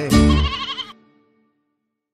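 A sheep's bleat sound effect over the last chord of a children's song. The music dies away about a second in.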